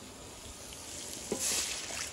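Mutton sizzling in a steel pot as a ladle stirs it. A light knock about a second and a quarter in is followed by a short louder burst of sizzling.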